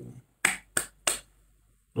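Three quick finger snaps, about a third of a second apart.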